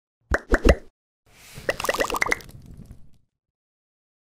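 Logo-intro sound effect made of short pitched pops: three quick pops, then a whooshing swell carrying a rapid run of pops that fades out about three seconds in.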